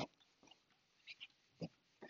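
Near silence: room tone, with a few faint short sounds a little after the first second.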